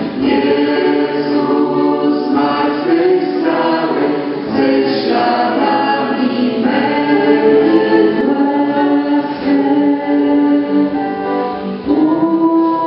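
A choir of voices singing a worship song in harmony, with long held notes.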